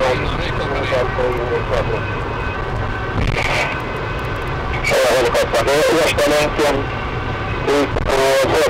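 Cabin noise of an unmarked SAAB 9-5 Aero driven hard at about 150 km/h: a steady low rumble of its turbocharged four-cylinder engine and the road. Voices, most likely police radio chatter, come over it at the start and again in the middle.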